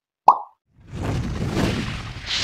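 A single short, pitched pop, then from about a second in a rumbling whoosh of an intro sound effect that builds toward an explosion.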